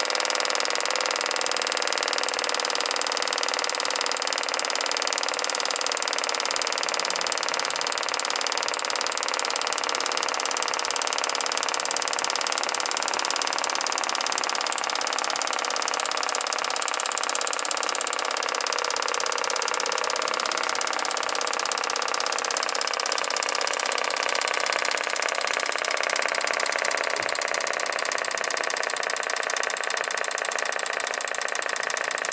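Old Italian Z-motor compressed-air model engine running steadily, spinning a 7-inch pusher propeller at low, powered-glide power as the regulated air pressure tapers off.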